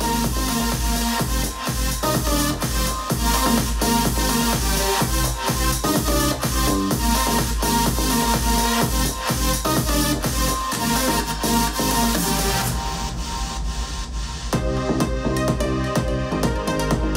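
Electronic dance music with a steady, bass-heavy beat playing from a Harman/Kardon Go + Play 3 portable speaker turned up loud. About three-quarters of the way through, the high end drops out briefly, then returns with a quick run of rapid hits.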